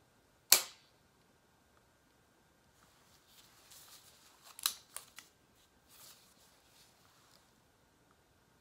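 A hyaluron pen, a spring-loaded needle-free filler injector, fires once against the jawline with a sharp snap about half a second in. Softer rustling and a few small clicks follow in the middle.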